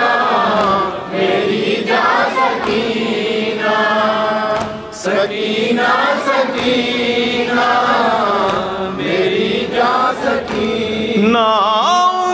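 A group of men chanting a noha, a mourning lament: a lead singer with other men's voices joining in unaccompanied chorus, amplified through microphones. The melody moves in long phrases with short breaks between them.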